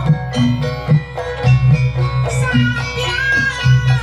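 Banyuwangi gamelan ensemble playing, with struck metallophone notes and held pitched tones over a low beat that recurs about once a second.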